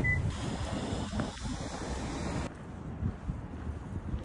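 Wind buffeting a phone's microphone: an uneven low rumble under a steady hiss. The hiss thins out abruptly about two and a half seconds in.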